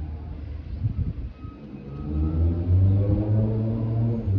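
Minibus engine running with a low rumble, then revving up about two seconds in, its pitch rising and growing louder.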